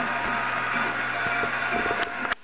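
Audience applauding and cheering over band music, heard through a television's speaker.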